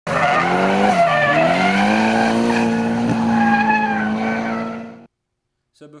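A car engine held at high revs with tyres squealing, as in a drifting car sliding. The revs dip once about a second in, climb back and hold steady, then the sound fades out and stops after about five seconds.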